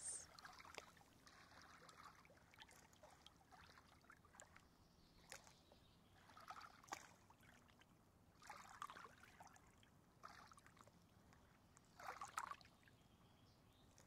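Faint lapping of small lake waves against shoreline rocks, a soft irregular splash every second or two over near silence.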